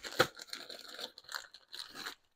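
A small clear plastic bag crinkling and rustling as it is handled and opened, with one sharp click a moment after the start.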